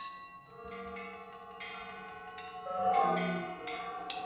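Experimental large-ensemble music: a string of struck, bell-like notes, about half a dozen, each ringing out and fading over held pitched tones.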